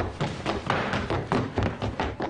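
Quick footsteps thudding down a staircase, about six steps a second.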